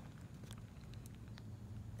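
Quiet background: a faint, steady low rumble with a few faint ticks, two of them about a second apart.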